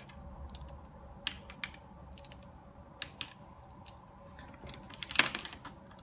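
Plastic pens clicking and tapping as they are spun and handled in the fingers: scattered light clicks, with a louder cluster of clatter about five seconds in. A faint steady low hum sits underneath.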